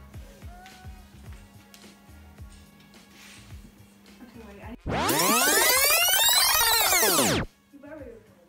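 An edited-in swoosh sound effect, a loud sweep that rises and then falls in pitch, starts suddenly about five seconds in and cuts off sharply about two and a half seconds later. Before it there is only faint room sound with a steady low hum.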